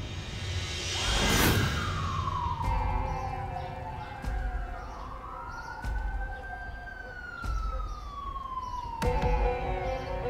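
Police car sirens wailing. One winds up about a second in and then glides slowly down and back up, while a second siren wails out of step with it. A low, steady music bed runs underneath.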